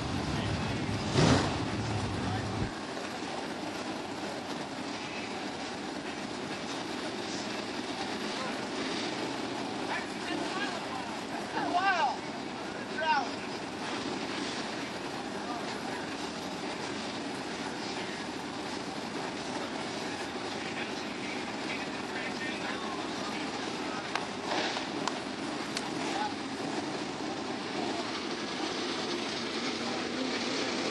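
Racetrack background: a steady hum of machinery with scattered voices of people nearby, a sharp knock about a second in, and a couple of short raised voice sounds around twelve and thirteen seconds.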